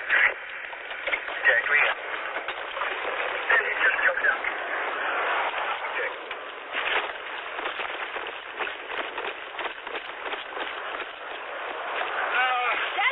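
Indistinct voices and crackling through a narrow, tinny radio-like channel, with many short clicks and rustles.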